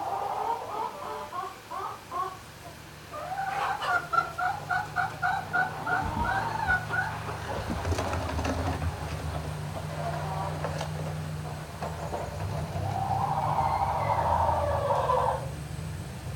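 Barnyard poultry calling: a short run of notes, then a quick run of evenly repeated notes, and later a longer drawn-out call that drops in pitch at its end. A steady low hum runs underneath.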